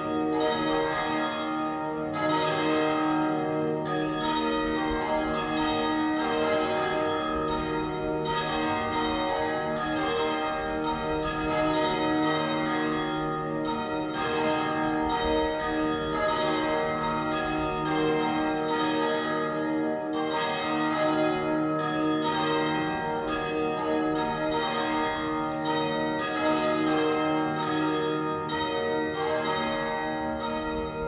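Church bells ringing in a continuous peal: many overlapping struck tones following one another quickly, each ringing on under the next.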